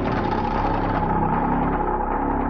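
Dramatic background music: a steady low rumbling drone under a held higher tone.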